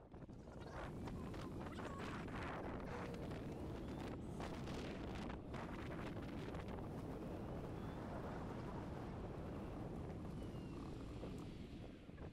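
Low, steady rumble of wind and tyre noise from a golf cart riding along a paved cart path, with a few faint ticks.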